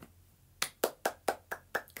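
A person clapping hands: about eight quick, even claps, roughly five a second, starting about half a second in.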